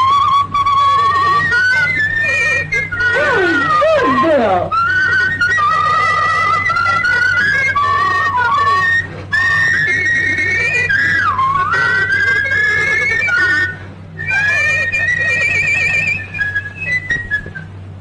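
People whistling a tune through pursed lips: a wavering whistle that slides up and down in pitch, at times two whistles together, breaking off about three-quarters of the way through, then resuming briefly before fading near the end.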